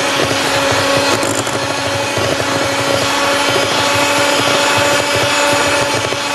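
Electric hand mixer running steadily at low speed, its beaters creaming butter and sugar in a glass bowl. A constant motor hum holds one pitch throughout.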